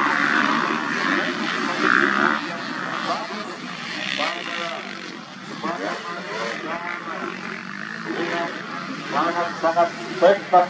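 Several motocross bike engines running on the track, loudest in the first two seconds, then fainter as a voice talks over them for the rest of the time.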